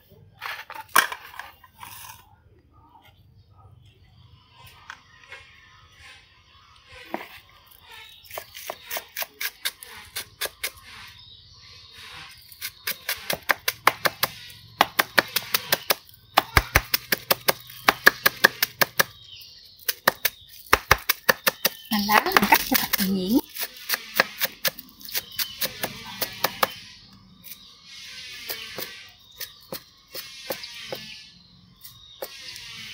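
Cleaver chopping green onions on a round wooden chopping board: fast runs of sharp knocks, several a second, broken by short pauses. About two-thirds of the way through there is a longer, louder noise lasting about a second.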